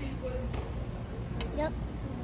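Brief speech, a short "yep", over a steady low background rumble.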